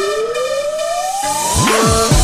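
Breakbeat dance-mix build-up: a siren-like synth tone rising steadily in pitch over held synth chords, with the drums dropped out. Near the end a deep bass sweeps down and back up.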